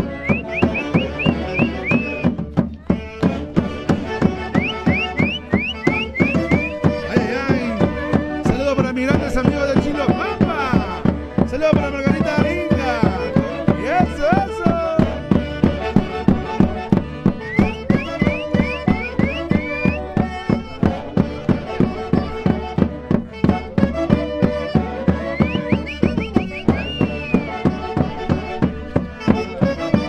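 Andean festival band music for dancing: a melody with quick rising slides over a fast, steady drumbeat.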